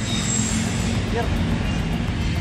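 Wind blowing across the camera microphone: a steady rushing noise with a low hum beneath it.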